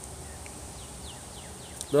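Faint outdoor background with a steady high hiss and a few faint bird chirps; a man's voice starts near the end.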